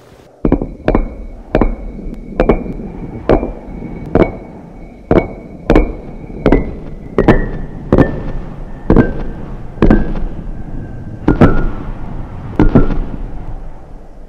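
Heavy stone slabs toppling one into the next in a domino chain: about fifteen thuds, each with a low rumble, one every second or less. A faint high tone runs beneath them and slowly falls in pitch.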